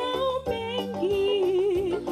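A group of young singers singing in harmony into microphones, an upper voice holding long notes with vibrato over a steady lower part.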